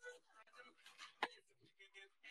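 Faint, low background speech, with a single sharp click just over a second in.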